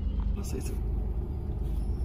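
Steady low rumble of a car idling, heard from inside the cabin, with a brief rustle about half a second in.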